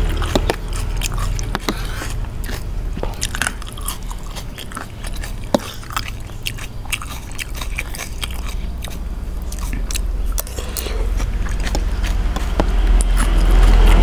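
Close-up chewing and biting of spicy chicken-feet salad with instant noodles: wet mouth sounds with many small crunches and clicks scattered throughout.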